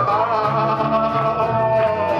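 Live acoustic rock band playing: a singer holds one long note on "de" over strummed guitar and a bass line.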